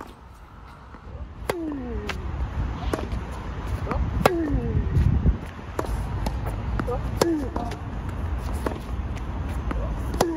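Tennis racket strings striking the ball in a cross-court forehand rally: a loud hit about every three seconds, each followed by a short falling exhale-grunt as the player breathes out through the shot, with fainter hits and bounces from the far side in between. A low rumble runs underneath.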